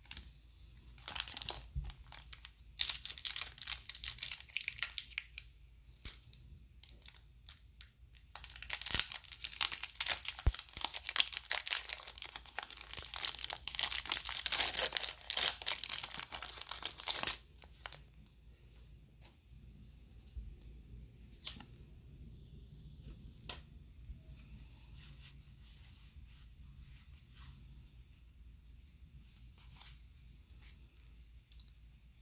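Foil wrapper of a Pokémon TCG booster pack being torn open and crinkled, in two spells of rustling, one starting about a second in and a longer one from about eight to seventeen seconds. After that come only a few soft clicks as the cards are handled.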